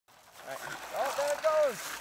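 A young child's high-pitched voice calling out without clear words, the last sound gliding downward near the end.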